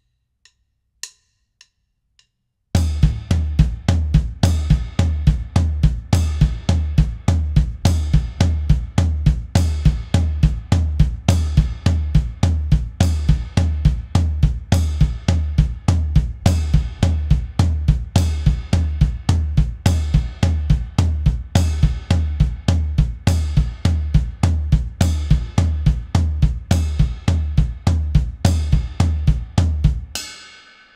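Drum kit playing a slow hand-to-foot split pattern on bass drum, floor tom and ride cymbal: both hands together on ride and floor tom, then a bass drum kick between every hand stroke (kick, right hand on the ride, kick, left hand on the floor tom, kick), repeated evenly. It starts about three seconds in after a few faint clicks, and the bass drum is the loudest part.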